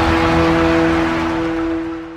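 The end of the closing music: a sustained chord rings on over a low rumble, then fades away near the end.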